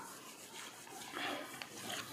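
Faint rubbing of a hand wiping marker writing off a whiteboard: a couple of soft swipes and a small tick.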